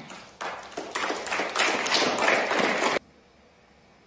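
Snooker audience applauding a safety shot. Dense clapping that stops abruptly about three seconds in, leaving faint hiss.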